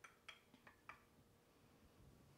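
Near silence, with about five faint light clicks in the first second: a wooden spoon tapping a small glass bowl as chopped garlic is scraped out into a pan.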